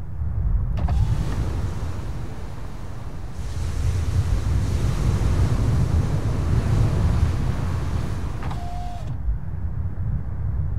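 Car interior at speed: a steady low road rumble, with a power window whirring open about a second in and wind rushing into the cabin through the opening. Near the end the window motor whirs again as the glass closes, and the wind noise cuts off.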